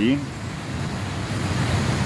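Steady rushing background noise with a low rumble underneath, fairly loud, after the tail of a spoken word at the start.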